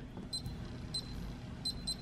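Electronic keypad lock on a gun safe giving short, high-pitched beeps as keys are pressed to enter the current combination: four beeps, the last two close together.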